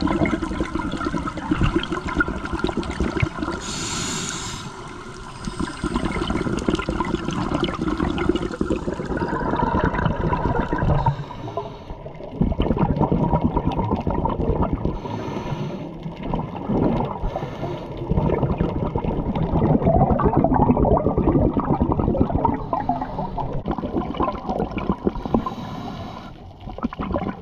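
Underwater sound of scuba exhalation bubbles gurgling and rushing in uneven surges, heard through the camera's housing, with a brief lull about twelve seconds in.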